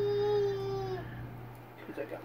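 A pet's long call held steadily on one high note, cutting off about a second in.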